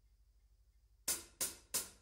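Near silence between album tracks, then a drummer's count-in: three sharp hi-hat taps about a third of a second apart, starting about a second in.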